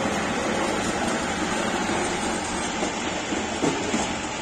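Three-wheel road roller's diesel engine running steadily as the roller rolls over fresh asphalt, fading slightly as it moves off, with a couple of brief knocks near the end.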